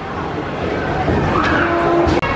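Car engine and tyre-skid sound effects from a racing game playing on a mobile phone, with voices chattering around it.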